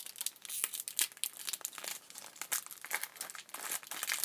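Plastic wrapper of a football trading-card pack being crinkled and torn open by hand: a dense, irregular run of sharp crackles.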